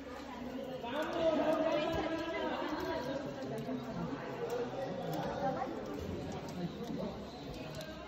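Indistinct chatter of several people talking in the background, with no clear words.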